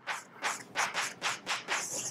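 Chalk writing on a blackboard: a rapid series of short, scratchy strokes, about five a second.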